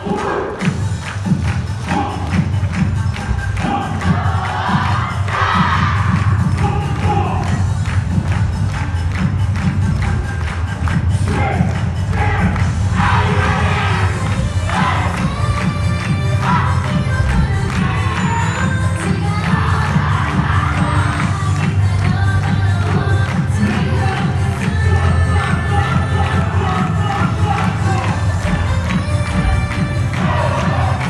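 Loud yosakoi dance track with a heavy beat played over the hall's sound system, with repeated group shouts and cheering over it.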